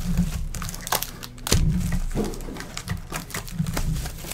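Small cardboard trading-card boxes handled and set down on a table: a run of knocks, taps and light thuds, the loudest about one and a half seconds in.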